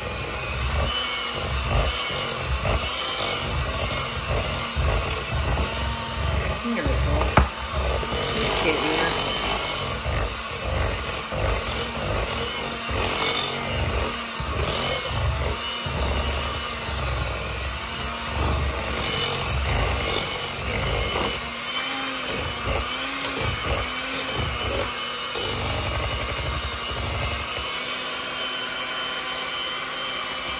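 Electric hand mixer running steadily, its beaters whipping a thick cream cheese mixture in a bowl: a steady motor whine with uneven low churning as the beaters move through the mix.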